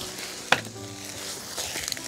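Faint crackly rustling on a pine-needle forest floor, with one sharp click about half a second in.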